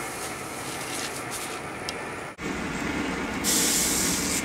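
Gas torch burning with a steady hiss while a bronze casting is heated for hot patination. The sound breaks off sharply about halfway through, and a louder, brighter hiss comes in near the end.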